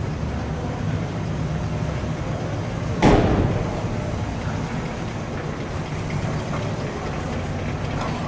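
1965 Chevrolet Chevelle Malibu wagon's 283 cubic-inch V8 running at low speed as the car rolls slowly along, a steady low hum. About three seconds in there is one sudden louder burst that fades over about a second.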